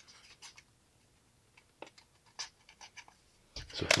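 Faint, scattered crinkles and ticks of 3M 1080 brushed-steel vinyl wrap film being handled and pressed around a trim piece by hand. Near the end a heat gun starts blowing with a steady rush of air.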